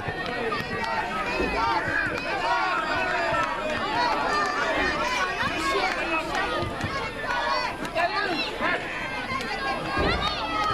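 Many overlapping children's voices calling and shouting across a football pitch during play, with no single clear speaker.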